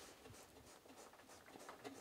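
Near silence, with faint scratchy rustling.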